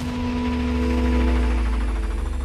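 Dramatic background score: a deep sustained drone with held tones above it, swelling in loudness and taking on a fast pulsing toward the end.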